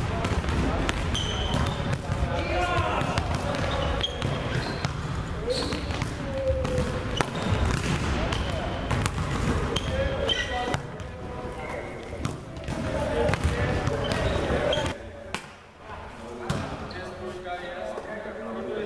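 Volleyballs being hit and players' feet landing on a sports-hall floor, heard as repeated short knocks and thuds, with indistinct voices in the hall.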